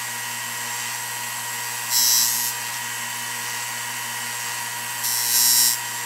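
Dremel belt-and-disc sander running with a steady motor hum. Twice, about two seconds in and again near the end, a small wooden piece is pressed against the spinning sanding disc, adding a short hissing rasp as a little wood is taken off to square it.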